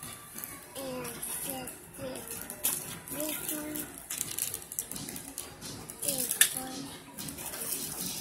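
Clear plastic packaging crinkling and rustling, with scrapes of a moulded cardboard tray, as small hands unpack a toothbrush, in irregular bursts of which the sharpest come a little under 3 seconds in and again past the 6-second mark. Short pitched voices and music play in the background.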